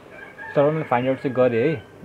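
A young man's voice in three or four drawn-out phrases whose pitch swoops up and down, starting about half a second in.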